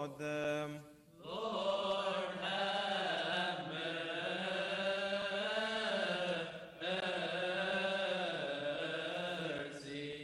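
Male voice chanting a Coptic Orthodox liturgical response in long, melismatic notes whose pitch wavers slowly. It breaks briefly for breath about a second in and again near seven seconds.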